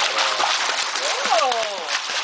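Water splashing steadily as a young child kicks and paddles through a swimming pool.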